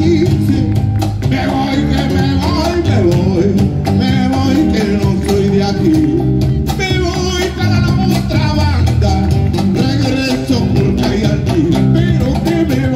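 Afro-Peruvian band playing a tondero live: guitars, bass and hand percussion (cajón and congas) with a singer. The full band comes in loudly right at the start after a brief quieter moment.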